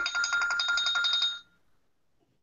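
Electronic ringing: a rapid trill with a steady high tone, which cuts off suddenly about one and a half seconds in.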